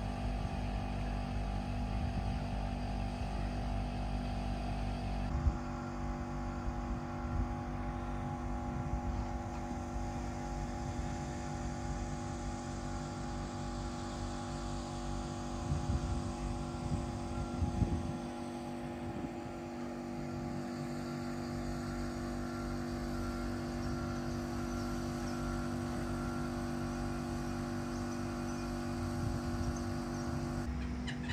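A pilot launch's engine running steadily at a constant pitch. The sound changes abruptly about five seconds in.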